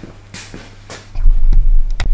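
Handling noise as the camera is picked up and carried: a couple of light knocks, then about a second in a loud, deep rumbling of the microphone being moved. A faint steady hum runs underneath.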